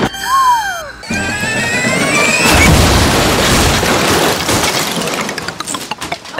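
Cartoon sound effects edited over music: a short falling whistle, then a tone rising in steps, then a long loud crash-like rush of noise that fades out near the end.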